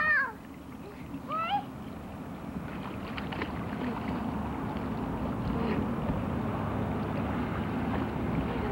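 A child's high-pitched squeal right at the start and a shorter rising one about a second and a half in, then a steady wash of splashing water that slowly grows louder as children swim in a pool.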